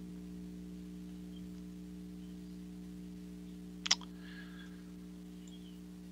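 Steady low electrical hum, with a single computer mouse click about four seconds in.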